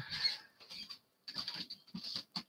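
Faint, irregular scratches and light ticks from hands counter-wrapping copper wire around a small fly hook held in a vise.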